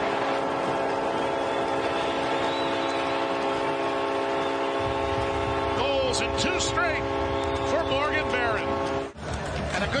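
Arena goal horn sounding one long, steady blast over a cheering crowd, celebrating a home goal; a low rumble joins about halfway through, and the horn cuts off suddenly about nine seconds in.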